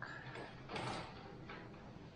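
Pen scratching over paper in short shading strokes, the longest about a second in, over a faint steady hum.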